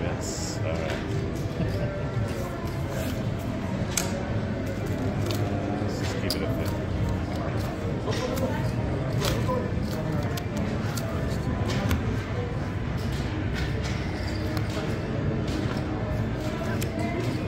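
Casino blackjack table: scattered light clicks of playing cards and chips being cleared, paid and dealt on the felt, over steady casino background music and chatter.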